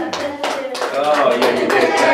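A small group clapping by hand, with voices over the applause.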